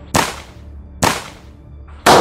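Two gunshots, about a second apart, each a sharp report with a short fading tail.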